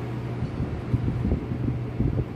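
Sharp J-Tech Inverter split-type air conditioner's indoor unit running: a steady low hum with airflow noise. Low buffeting of air on the microphone comes and goes in the second half.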